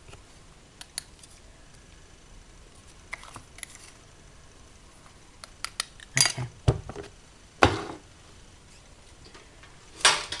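A plastic tray of thick embossing powder being handled and shaken over a stamped piece, making light plastic clicks and rattles. A cluster of louder rattles comes about six seconds in, and another at about eight seconds.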